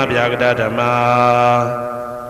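Male voice chanting Pali in the Theravada Buddhist manner: a few quick chanted syllables, then one long held note that fades away near the end.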